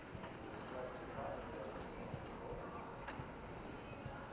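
Hoofbeats of a show-jumping horse cantering across a grass arena, a run of short irregular impacts over a steady murmur of voices.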